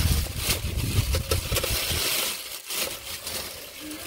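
A plastic bag rustling and crinkling as it is handled and opened, in a run of short irregular crackles. A low rumble under it in the first half stops about two seconds in.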